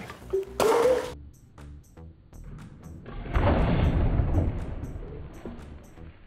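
A kinetic water ram firing its pumped-up compressed-air charge into a clogged drainpipe: bursts of rushing noise about half a second in and again from about three seconds in, fading away. This plays under background music with a steady beat.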